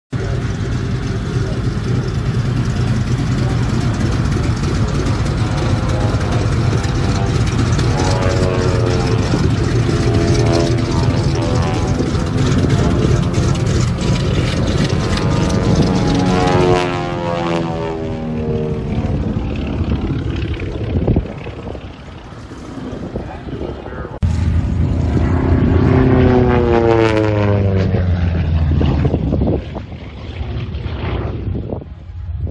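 Republic P-47 Thunderbolt's Pratt & Whitney R-2800 radial piston engine running as the fighter taxis past close by, its propeller note sweeping in pitch as it goes by. After a few abrupt cuts and a quieter stretch, the engine is loud again near the end, with the same sweeping pitch as the plane passes.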